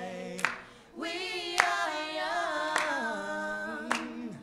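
A vocal group singing together without instruments, with one sharp clap about once a second keeping time. The singing pauses briefly about a second in, then carries on.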